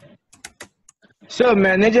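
A quick run of keystrokes on a computer keyboard in the first second, then a man starts speaking.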